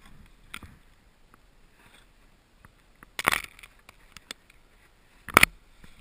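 Two short scrapes in deep snow from a snowboarder moving through a tight tree glade, one about three seconds in and a louder one about five seconds in, with quiet between them.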